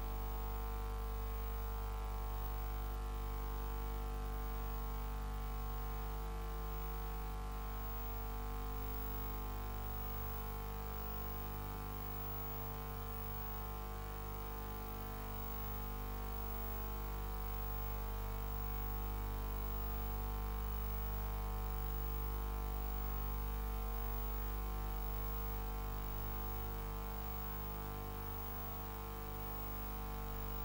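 Steady low electrical mains hum with a buzzy edge, even and unbroken.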